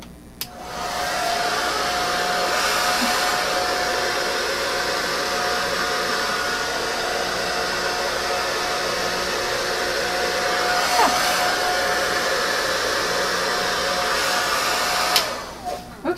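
Hot Shot handheld hair dryer with a nozzle attachment, running steadily on its medium setting with a faint whine over the rush of air, blowing out wet acrylic paint. It clicks on just under a second in and clicks off near the end.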